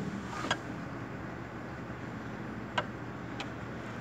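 Steady background room noise during a pause in a lecture, broken by three short clicks: one about half a second in and two more near the end.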